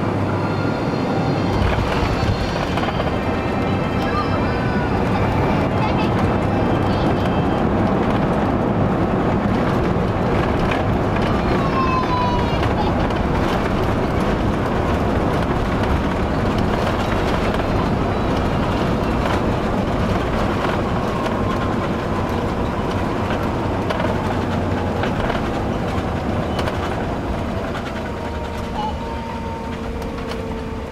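Cabin noise of an Airbus A350-900 rolling along the runway after landing: a steady roar and rumble from the engines, rushing air and landing gear, easing a little near the end as the aircraft slows.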